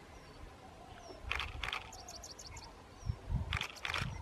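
Quiet outdoor ambience with small birds chirping: scattered single high chirps and a quick run of about six high notes near the middle, along with a few short clicks over a low rumble.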